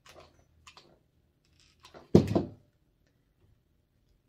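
Light handling clicks and rustles, then a single sharp thump about two seconds in, the loudest sound: a hot glue gun being set down on the craft table.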